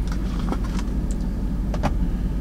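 Steady low hum of an idling truck heard from inside the cab, with a couple of light clicks near the end.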